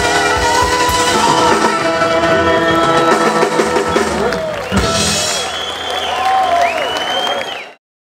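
Band music with drums, electric guitar and a wavering lead voice or horn line, fading out to silence near the end.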